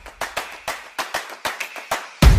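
A rapid run of sharp, evenly spaced clicks, about five a second, from the end-card animation's sound effect, leading into the outro music.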